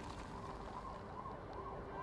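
A siren yelping, its pitch rising and falling about three times a second, over a steady hiss.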